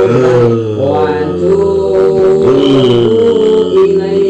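A man chanting in a long, melodic recitation, holding drawn-out notes and gliding between them, in the style of Quranic verses recited for ruqyah.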